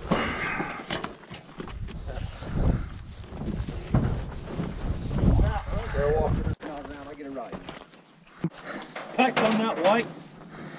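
Indistinct voices talking, with a low rumble on the microphone through the middle seconds.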